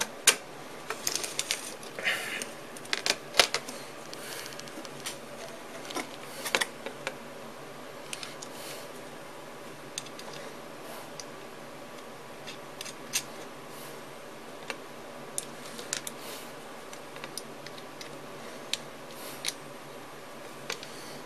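Irregular small clicks and taps of hands working small hardware (nuts, bolts and standoffs) onto a board, with handling rustle close to the microphone. The clicks come thick and loud over the first few seconds, then turn sparse and scattered.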